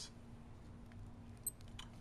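A single short, high-pitched beep from a Casio G-Shock GWM5600 digital watch as a button is pressed to switch display modes, about a second and a half in, over faint room tone.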